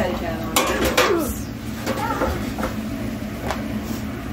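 Dishes and cookware clattering in a kitchen: a few sharp knocks and clinks, several close together about half a second to a second in, then single ones spread out, over a steady low hum.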